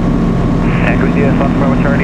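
Sport Cruiser light aircraft's Rotax 912 flat-four engine and propeller running at low power as it taxis onto the runway, a steady drone.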